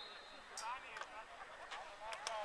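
Faint shouts of players calling across a football pitch, with a few sharp knocks scattered through.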